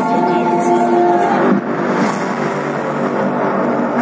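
Amplified live concert music: held notes break off about a second and a half in, and a rushing noise swells up in their place.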